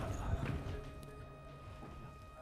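Rustling and soft low thumps as two men get up from upholstered armchairs, loudest in the first half-second. After that, quieter room sound with a faint steady high tone.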